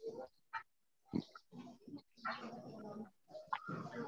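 A person's voice, quiet and without clear words: a few short murmurs and one held, drawn-out hesitation sound about halfway through.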